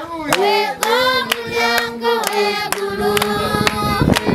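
A group of girls singing together, with hand claps keeping a steady beat of about two a second.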